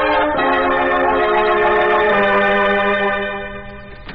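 Organ music bridge from a 1940s radio drama: sustained chords that shift a few times and fade out near the end, marking a scene transition.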